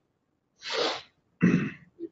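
A person's breathy intake of air about half a second in, followed by a short, sharp exhaled burst through the nose or mouth, the louder of the two.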